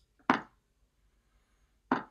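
Two short knocks or taps, the louder one about a quarter-second in and a softer one near the end, with quiet in between.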